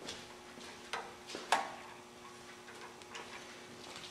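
Three light metallic clicks in quick succession about a second in, as the clamp of a dial indicator stand is tightened with a hand tool on the engine block, over a faint steady electrical hum.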